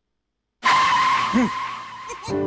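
A comic sound effect in a TV sitcom: after a moment of dead silence, a sudden loud screeching whoosh with a steady whistling tone cuts in. It fades away over about a second and a half.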